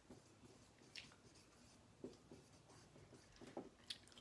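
Dry-erase marker writing on a whiteboard: faint, a handful of short strokes.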